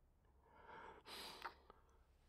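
A man's faint, close breathing recorded on a binaural dummy-head microphone: a soft breath and then a sigh-like exhale, ending in a small click about one and a half seconds in.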